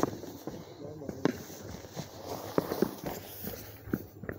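Several sharp, irregularly spaced clicks, with faint voices in the background.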